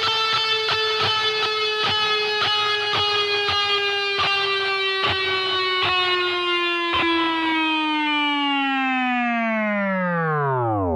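The final held note of a song on electric guitar. Regular strikes about twice a second run under it until about seven seconds in. Then the note rings on alone, its pitch sinking slowly and then faster toward the end.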